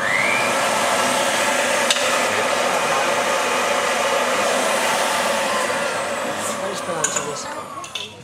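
Electric meat mincer starting with a short rising whine, then running steadily as it minces the beef fillet for steak tartare. It slows and fades over the last couple of seconds.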